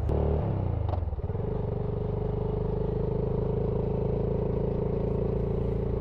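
BSA Gold Star 650's single-cylinder engine on the move. Its revs fall over the first second or so, then it runs at a steady engine speed.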